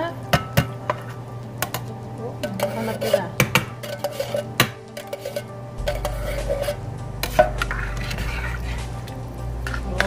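Metal tongs and a spoon knocking and scraping against a stainless steel pot as chicken pieces in coconut-milk curry are stirred, with a tin can tapping the rim as it is emptied. Sharp clinks come thick in the first five seconds, and a low hum joins about six seconds in.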